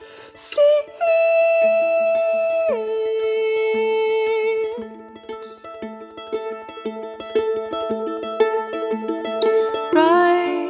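Acoustic folk music: a viola plucked pizzicato in a steady pattern of short notes. A long held note sounds over it in the first half, stepping down once partway through.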